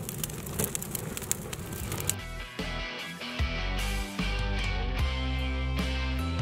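A fire of dried sunflower stalks and cardboard burning with rapid crackles for about two seconds, then background music with a steady bass takes over.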